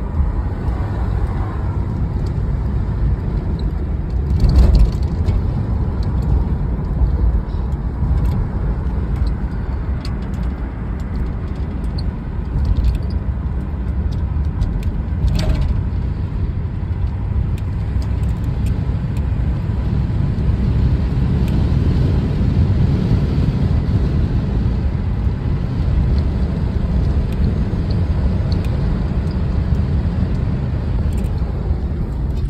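Box Chevy Caprice driving, its engine and road noise heard inside the cabin as a steady low rumble, with a thump about four and a half seconds in.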